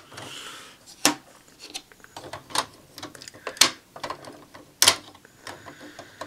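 Hard plastic toy parts clicking and snapping as tires are pressed and fitted onto the wheels of a Deluxe Tridoron toy car. A short rubbing sound comes first, then a string of sharp clicks, the loudest about a second apart, with smaller ticks between.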